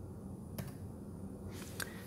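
Low steady room hum with a faint click about half a second in and a few more small clicks near the end.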